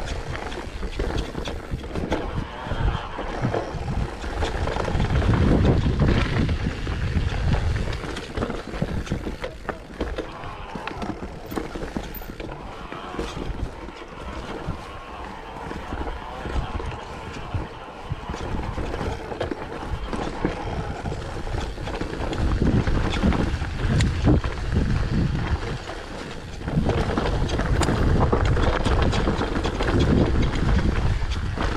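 Mountain bike descending a dirt forest trail: wind on the microphone, tyres rolling over dirt and roots, and the bike rattling and clattering over bumps. It gets louder about five seconds in and again over the last several seconds as the pace picks up.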